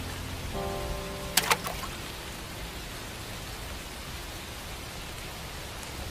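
Steady rain falling, an even soft hiss. About half a second in a short pitched tone sounds, followed by two sharp clicks at about a second and a half.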